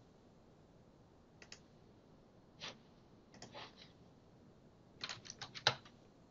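Faint clicks of a computer keyboard and mouse: a few scattered clicks, then a quick run of key presses near the end, the last one the loudest.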